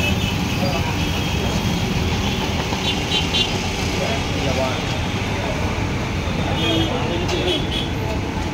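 Steady low rumble of busy street-side background noise, with faint voices talking in the distance.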